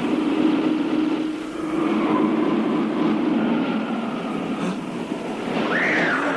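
Strong wind rushing steadily through trees, a cartoon sound effect, with a rising whistle-like glide near the end.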